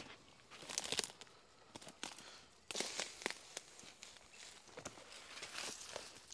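Footsteps on a dry dirt path strewn with dead leaves and twigs: irregular crunching and rustling, heaviest about a second in and again around three seconds.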